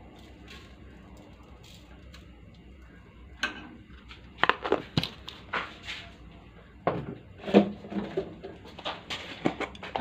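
A metal spoon clinking and knocking against a stainless steel pot as seasoning is tipped onto meat. After a quiet first three seconds come a series of short, sharp clinks at irregular intervals.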